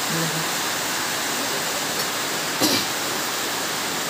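A steady, even rushing hiss, with a brief murmur of voices at the start and once more past the middle.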